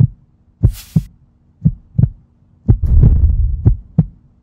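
Heartbeat sound effect: low double thumps repeating about once a second, with a deep rumble under the last few beats.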